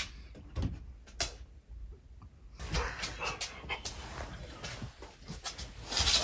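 A husky making short whiny vocal noises. There is rustling and shuffling from movement in the second half.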